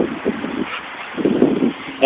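Wind noise on the microphone and handling rustle from a hand-held camera, with a few short, muffled bursts near the start and again past the middle.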